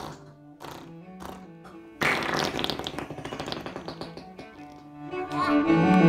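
A child blowing a raspberry against a bare belly: a sudden loud, wet, fluttering buzz about two seconds in that lasts about two seconds. Soft background music plays under it and swells near the end.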